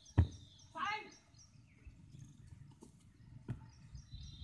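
A single heavy thud of a body landing in soft sand after a forward dive, followed about half a second later by a short cry from a person's voice.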